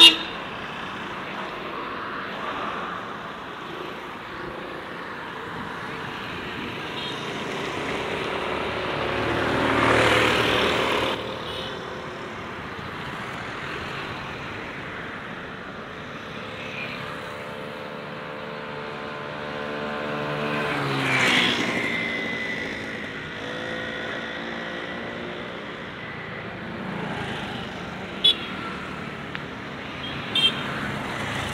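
Road traffic heard from a bicycle on a village road: motor vehicles pass close by twice, about a third of the way in and again about two-thirds in, the second with an engine note that falls in pitch as it goes by. A sharp click comes at the very start and again near the end.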